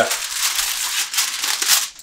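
Aluminium foil crinkling and crackling without a break as it is peeled back off a disposable aluminium pan.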